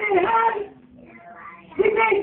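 A woman's voice singing a short phrase with held notes, then about a second's pause before her voice starts again near the end.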